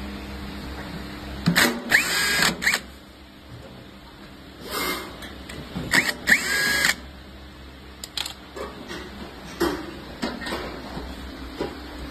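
Cordless drill-driver running in short bursts on the screws of a sheet-metal panel, its motor whine rising in pitch as it spins up: two main runs and a shorter one between them. Near the end come a few short clicks and knocks.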